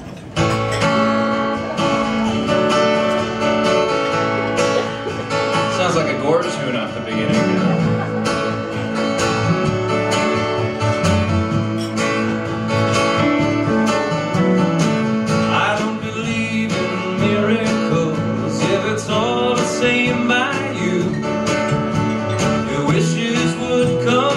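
Live country-folk band playing an instrumental intro: strummed acoustic guitar, electric guitar and drums, with lead lines that slide between notes. The band comes in abruptly just after the start.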